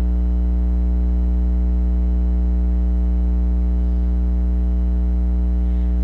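Loud, steady electrical mains hum with a buzz of higher overtones; nothing else stands out.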